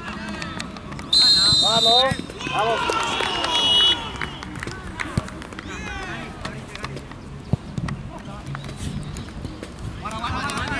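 Referee's whistle blown once, a loud shrill blast of about a second, signalling the kick-off, followed by a second, fainter and slightly lower whistle lasting over a second. Players shout throughout.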